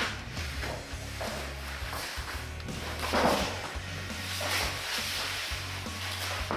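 Background music with a low steady bass under several bursts of rough, rasping noise from a roped alligator thrashing on a bare, dusty subfloor.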